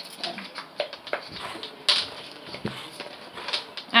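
Handling noise from a damp wig: its hair is swept and shaken against the phone, giving irregular soft knocks and rustles, with one sharper knock about two seconds in.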